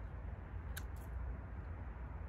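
Corona hand pruners snipping once through a thin apple branch, a single short, sharp click about three-quarters of a second in, as a thinning cut. A low rumble runs underneath.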